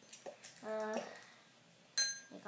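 A hand rummaging in a small stainless-steel bowl of Skittles: a few faint clicks, then a sharp metallic tap on the bowl near the end that rings briefly. A child's short voiced sound comes in the middle.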